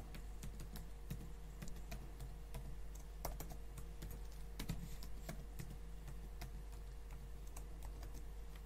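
Typing on a laptop keyboard: irregular key clicks, entering login details.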